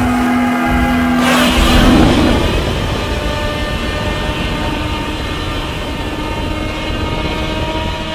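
Godzilla's roar: one long, harsh call that starts about a second and a half in and holds for several seconds.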